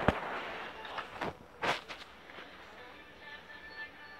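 A few sharp knocks and clicks of a phone being handled and moved while filming, the loudest right at the start and another about 1.7 s in, over faint background music.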